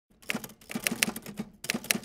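Typewriter typing sound effect: rapid clacking key strikes in two runs, with a short break about one and a half seconds in.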